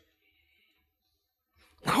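Near silence: a pause in a man's speech, broken near the end as his voice resumes.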